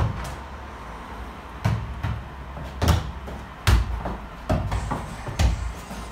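A ball being bounced and kicked back and forth in a foot-tennis rally: a string of dull thuds roughly once a second.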